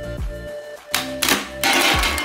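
A spring-loaded pop-up barrel toy fires about a second in: hard plastic Minion figures shoot out and clatter onto the table in a quick run of rattling knocks. Background music plays underneath.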